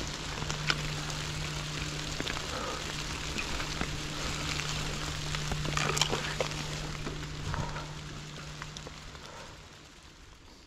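Mountain bike ride on a forest trail heard from the bike-mounted camera: a steady rushing of tyres and air with scattered sharp clicks and rattles over a steady low hum, fading out over the last couple of seconds.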